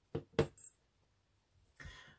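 Beads clicking against each other and against a small clear plastic pot as one is picked out: a few sharp clinks in the first half-second, the second the loudest.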